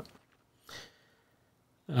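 A man's short breath, drawn in once between sentences, with the start of a spoken "um" at the very end.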